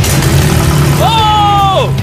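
The engine of a rusted old car catches and runs, a steady low drone under a burst of noise as it fires. About a second in, a person lets out a long high cry that falls away near the end.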